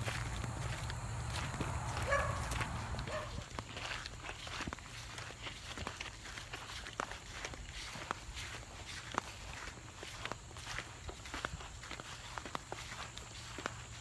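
Footsteps of people walking on sandy dirt and grass, a string of soft, irregular steps. A low rumble fades out after about three seconds.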